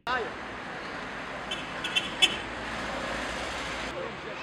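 Street ambience: a steady wash of road traffic with the voices of a crowd gathered on the pavement. A few brief sharp sounds come about halfway through.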